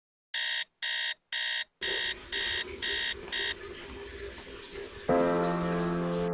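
Phone alarm beeping: seven short electronic beeps, about two a second, that then stop. About five seconds in, a piano music track begins.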